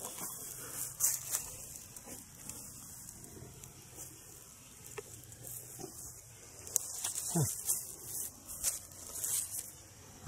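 Leaves rustling and handling noise as a camera is pushed through milkweed foliage, with a few sharp clicks. Behind it runs a steady, high insect chorus.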